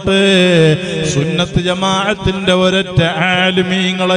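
A man's voice chanting in a melodic, intoning style, with long held notes that bend slowly up and down in pitch.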